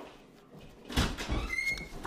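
A door being opened: a few knocks of the latch and handle about a second in, then a short squeak of the hinge.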